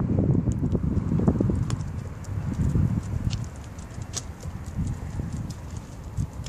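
Low rumble of street traffic, loudest at the start and fading over the first two or three seconds, with scattered light clicks and knocks throughout.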